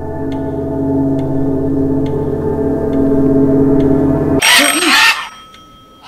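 A sustained, eerie music drone swells steadily and breaks off about four and a half seconds in. A doorbell then rings sharply for under a second and dies away.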